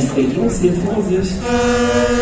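Amplified voices and music from a fairground ride's sound system, with a long, steady held note that starts suddenly about one and a half seconds in.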